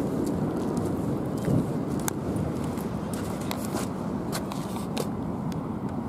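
Steady rumble of street traffic, with a few scattered light clicks.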